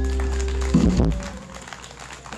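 A live band of archtop electric guitar, banjo, electric bass and drum kit holding the last chord of a song, closing on a final hit a little under a second in, then ringing out.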